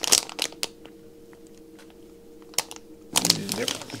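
Metallised anti-static bag crinkling and crackling as it is handled, in a short run of sharp crackles at the start, then going quiet apart from a single click later on.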